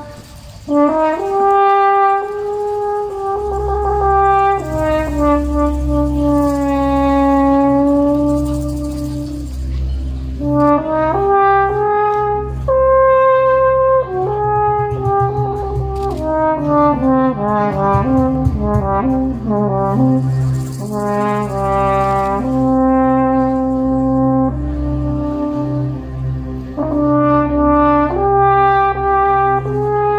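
French horn playing a slow solo melody of long, held notes, after a brief break right at the start. From about three seconds in, a low steady drone sustains beneath it.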